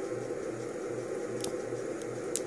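Steady background hiss with a low hum pulsing about four times a second, from a machine such as a fan running in the room. A single faint click comes about one and a half seconds in.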